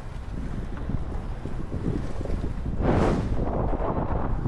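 Gusty wind buffeting the camera microphone: a steady low rumbling rush that swells about three seconds in.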